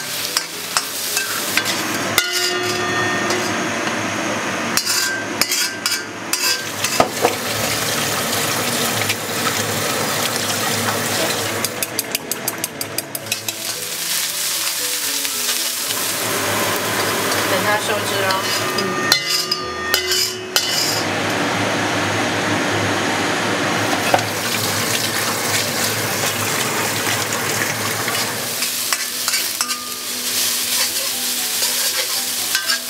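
Wild greens stir-frying in hot oil in a honeycomb-pattern wok: steady sizzling, with frequent scrapes and taps of a metal spatula against the pan.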